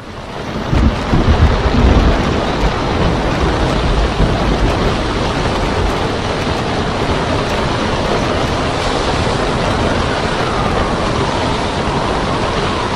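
Storm at sea: wind and crashing water with a heavy low rumble, swelling up over the first second and loudest in the first couple of seconds, then steady, with a faint falling whine near the end.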